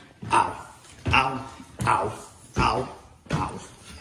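A dog barking repeatedly: five short barks, evenly spaced under a second apart.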